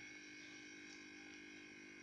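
Near silence: room tone with a faint steady tone in the background.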